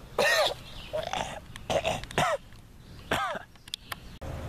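A young man's voice making a series of short coughs and strained throat sounds, about five in four seconds: a staged death from a stab wound.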